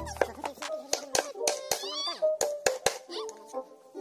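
Hammer driving nails into a plywood board: a series of sharp, irregularly spaced strikes, heard under background music.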